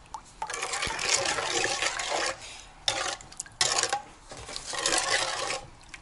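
Metal spoon stirring warm water in an enamel bowl to dissolve yeast and sugar, the liquid swishing in three bouts with short pauses between.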